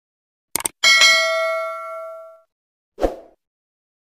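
Subscribe-button sound effects: a quick double mouse click, then a single bright bell ding that rings and fades out over about a second and a half. A short sharp hit follows about three seconds in.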